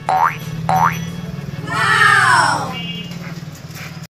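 Two quick rising cartoon boing sound effects, then about two seconds in a long horse whinny sound effect that rises and falls in pitch, over a steady low hum.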